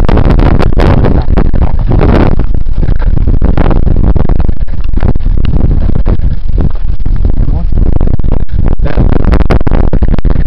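Loud, overloaded rumble and clatter on a camera microphone carried on a mountain bike riding a dirt trail, with many sharp knocks as the bike bumps over the ground.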